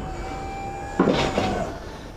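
Truck hydraulic lift gate lowering while its control button is held down: a steady hum with a thin steady tone, then a sudden louder noisy burst about a second in that fades over about half a second.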